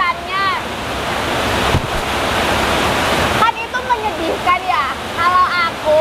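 A steady rushing hiss, like heavy rain or water noise, fills about three seconds and cuts off suddenly, with women's voices before and after it.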